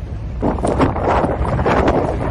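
Wind buffeting the microphone of an outdoor field recording: a low rumble with a gusty rushing noise that swells about half a second in.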